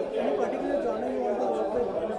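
Speech only: background chatter of several voices talking at once.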